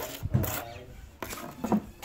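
Several short scrapes and knocks of bricklaying work with mortar and clay bricks, with faint voices in between.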